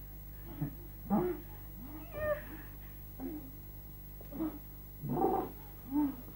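A run of short, whining, cat-like cries, about one a second, some rising and some falling in pitch, the loudest about five seconds in.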